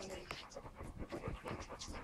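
A dog panting, a run of short, quick breaths.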